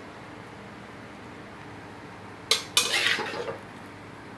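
Metal spatula scraping and clinking against a steel wok as stir-fried cabbage is scooped out. One sharp clink about two and a half seconds in, then a second-long scrape; before that, only a low steady background.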